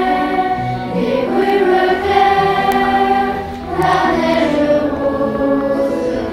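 Children's choir singing a French song in long held notes, with short breaks between phrases about a second in and again shortly before four seconds.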